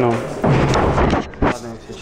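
Large sheets of drawing paper being handled and rustled on a table, with a loud burst of handling noise about half a second in and a sharp knock about a second and a half in.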